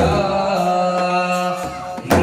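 A group of men singing a devotional chant together, holding long, steady notes, with a sharp hit at the very start.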